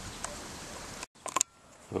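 Steady background hiss from the recording that cuts out abruptly about a second in, followed by a few short clicks and much quieter hiss.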